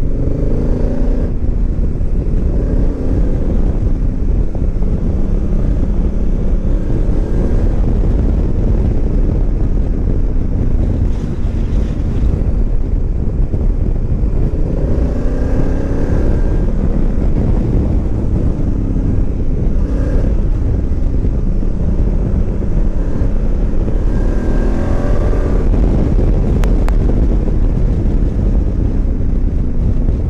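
Honda Africa Twin DCT's parallel-twin engine running on the road under load, its pitch rising and falling several times as the bike accelerates and changes gear, over a steady rush of wind on the microphone.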